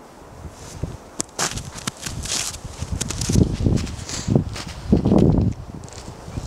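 Footsteps crunching through snow, irregular and growing louder through the second half.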